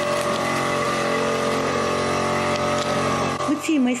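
A vehicle engine running steadily at idle, an even, unchanging hum.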